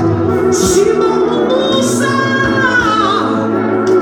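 A woman singing into a microphone, holding long wavering notes, with a run that slides down in pitch around the middle.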